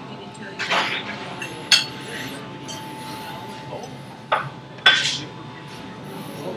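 A few sharp clicks and clinks over a steady room background: handling noise from the recording phone as it is picked up and moved.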